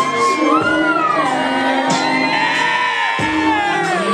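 A woman singing long, gliding notes over a backing track with a steady bass line.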